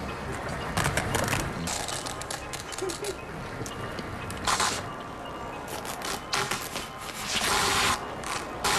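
Television commercial soundtrack: background music with several short bursts of noise, the loudest about four and a half seconds in and near the end.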